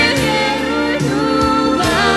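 A man and a woman singing a pop duet live, with a band of electric guitar and drums.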